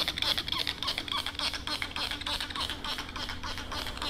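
Trigger spray bottle of diluted Simple Green pumped rapidly against windshield glass, with short hissing sprays and the trigger squeaking about twice a second.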